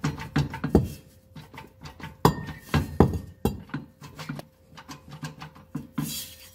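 Steel driveshaft tube clinking and knocking against metal as it is slid and lifted into place under the car: a run of sharp taps, with a few louder knocks in the middle.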